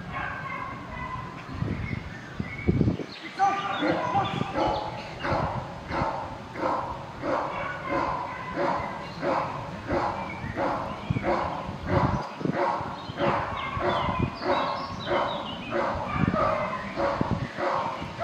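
A Belgian Malinois-type police dog barking steadily, about two barks a second from a few seconds in, guarding a helper in a bite suit who stands still in front of it.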